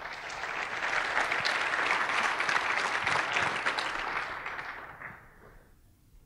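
Audience applauding: it builds quickly, holds for about four seconds and dies away near the end.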